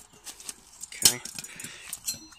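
Stainless steel billy can's wire handle and lid clinking as they are handled: a few light metal clicks and knocks as the handle is folded down and the lid is taken off.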